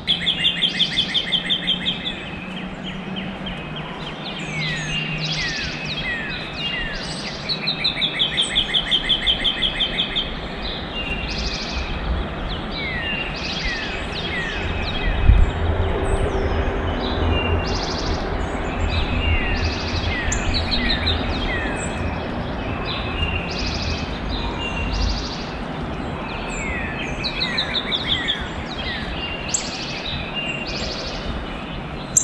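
Several wild birds singing: a rapid trill of evenly spaced notes lasting about two seconds, heard three times, among short down-slurred whistled notes and chirps. A low rumble rises in the middle, with a single thump about halfway through.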